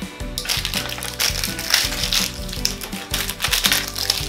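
Crinkling and rustling of small plastic and foil toy wrappers being handled and peeled open, over light background music.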